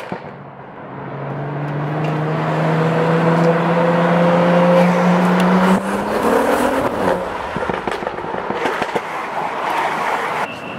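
A BMW car's engine accelerating, heard from inside the cabin. It grows louder and rises steadily in pitch for about five seconds, drops with an upshift about six seconds in, then rises again briefly.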